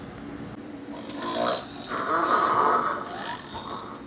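A person snoring: two long snores, the first about a second in and the second louder and longer.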